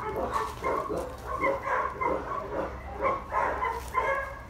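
Dog barking repeatedly, in short barks about three a second.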